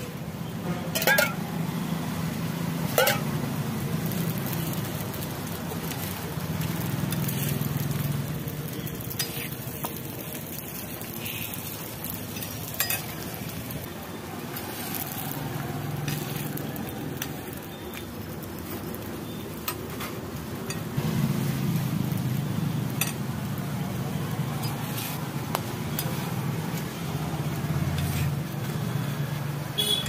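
Parottas frying on a large flat iron griddle, with a steel spatula clinking and scraping against the hot metal now and then, sharply twice in the first few seconds. A low, steady rumble runs underneath.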